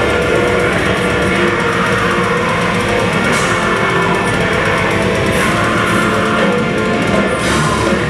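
A heavy metal band playing live: distorted electric guitars, bass and drum kit, loud and continuous, with cymbal crashes cutting through now and then.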